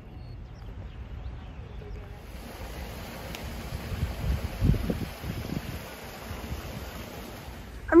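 Outdoor ambience: a steady hiss with low gusts of wind buffeting the microphone about four to five seconds in.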